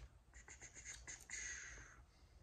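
A vinyl LP in its paper inner sleeve sliding out of the cardboard album jacket: a few short, faint scrapes, then one longer slide near the end.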